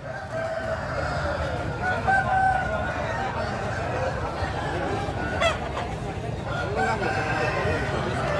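Gamecock roosters crowing at intervals over the steady hubbub of a crowded market.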